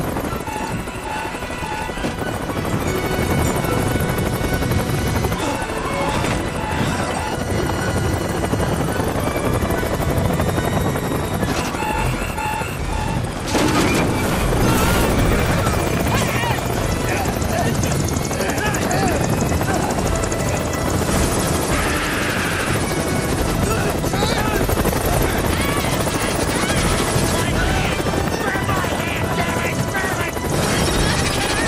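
Hovering helicopter's rotor and engine noise in a film soundtrack, mixed with dramatic score music and shouted voices. Short sets of beeps recur a few times in the first half, and the din grows louder about halfway through.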